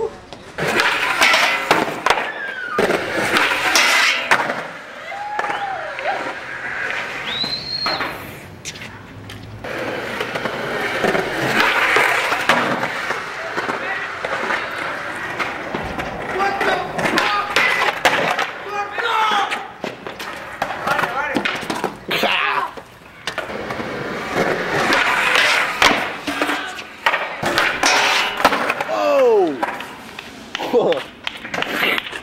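Skateboarding at a stair handrail: wheels rolling on concrete and boards clattering and knocking down, with voices among the onlookers.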